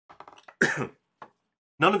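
A man clearing his throat: a soft build-up, then one harsh rasp about half a second in, followed by a brief faint click before he resumes speaking near the end.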